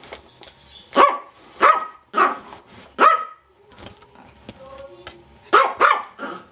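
Yorkshire terrier barking: four barks in quick succession starting about a second in, a pause, then two more close together near the end.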